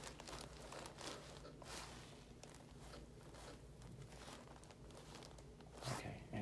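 Faint rustling and crinkling of the paper table cover and clothing as hands move around the head and neck, over quiet room tone.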